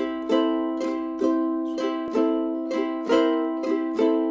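Ukulele strummed in a blues shuffle, alternating a C chord with C6 made by fretting the second fret of the fourth string. Stronger strums come about once a second with lighter ones in between.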